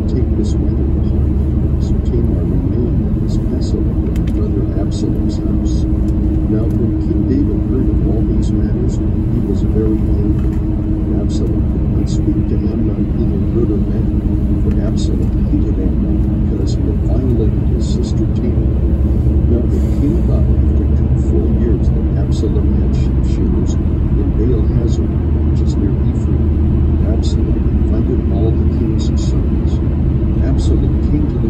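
Steady road and engine rumble inside a car cruising on a highway, with a voice speaking faintly under the noise throughout.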